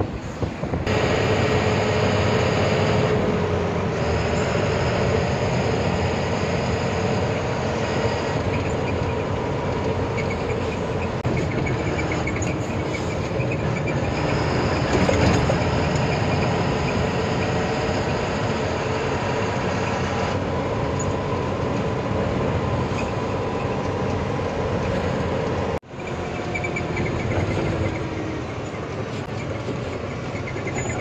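Truck engine and road noise heard from inside the cab while driving, steady throughout, with a brief dropout about four seconds before the end.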